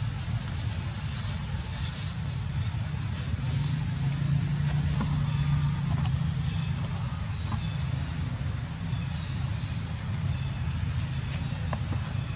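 A steady low motor hum, like an engine running, with a faint hiss above it; it swells slightly for a couple of seconds in the middle.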